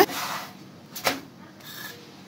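A wooden spatula scraping against a non-stick pan as it is worked under a naan to turn it, with one light knock about a second in.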